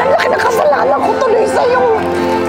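Several voices talking at once in overlapping chatter, over steady held tones of background music.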